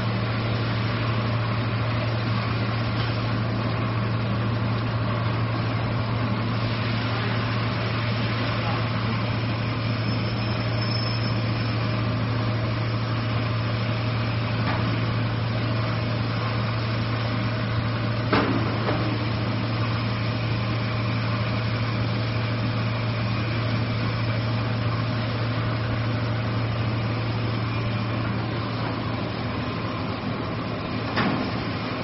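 Three-layer co-extrusion stretch film machine running: a constant low hum under steady mechanical noise, with one short knock about eighteen seconds in.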